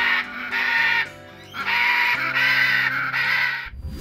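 Macaw squawking in two long, harsh calls, the second lasting about two seconds, over background music with sustained low notes.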